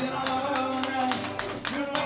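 Acoustic guitar strummed in an instrumental passage between sung lines, held chords ringing under quick, crisp percussive strokes.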